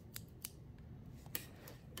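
Scissors snipping through a folded sheet of paper: a few short, faint snips spread over the two seconds.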